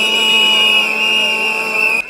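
Protesters' whistles blown continuously, a loud, shrill, steady tone. A lower, steady, horn-like note with overtones sounds along with them.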